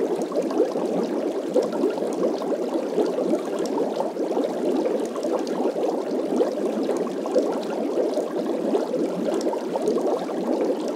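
Continuous bubbling-water sound effect, an even stream of small bubbles with no pauses: the alert that the countdown timer has reached zero.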